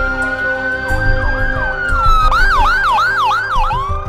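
Ambulance siren: a long wail that rises slowly, holds, then falls. About two seconds in it switches to a rapid yelp of about three sweeps a second, heard over background music with sustained notes.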